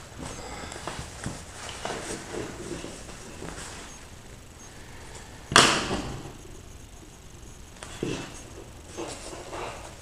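Nylon shell fabric of a down quilt rustling and shifting as it is handled, with small scattered clicks. One sharp knock about halfway through is the loudest sound, with a smaller one near the end.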